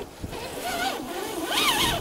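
Electric motor and gearbox of an Axial SCX10 II RC crawler whining under load as it struggles to climb out of a dirt rut. The pitch wavers with the throttle and rises sharply near the end.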